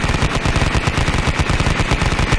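Machine-gun fire sound effect: rapid automatic fire at about a dozen shots a second, continuous and steady in level.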